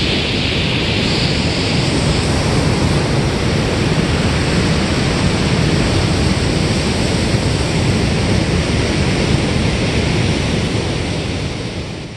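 Loud, steady rushing noise with a flickering low rumble, unbroken and without any distinct events, like wind and surf.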